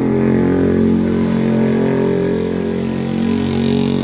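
An engine running steadily, a constant pitched drone that eases off slightly toward the end.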